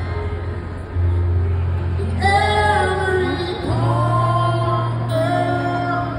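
Acoustic guitar played live under a man's singing voice; the singing comes in about two seconds in with long held notes.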